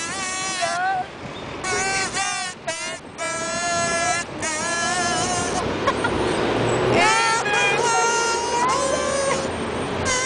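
Blue plastic kazoo hummed through, playing a tune in buzzy held and sliding notes. The tune breaks off for about a second just past halfway, then picks up again.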